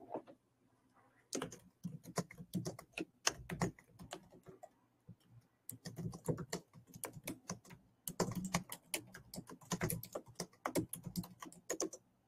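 Typing on a computer keyboard: rapid key clicks in three bursts with short pauses between them.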